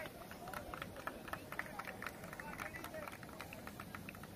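Faint outdoor ambience of a crowded sports ground: distant voices, with quick, irregular light taps of feet running on grass.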